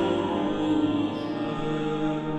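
Pipe organ of the Franciscan church in Wieliczka playing slow, sustained chords of a psalm melody, the notes held and changing smoothly.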